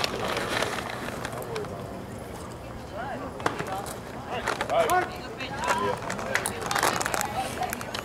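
Scattered shouts and calls from voices around a baseball field over steady outdoor background noise, with one sharp click about midway.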